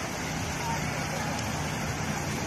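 Fountain water jets and a sheet waterfall splashing into a pool: a steady rushing, with a crowd's voices faintly behind it.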